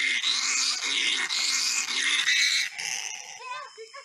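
A loud, harsh, raspy animal cry lasting about three seconds, then faint voices near the end.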